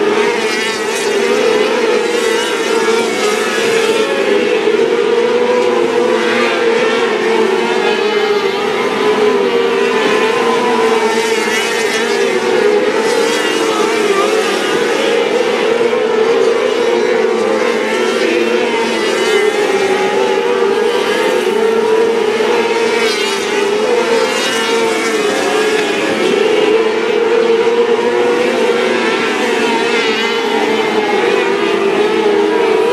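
Several 600cc micro sprint cars racing, their 600cc motorcycle engines running at high revs. The pitch wavers up and down continuously as the cars lift, accelerate and pass through the turns.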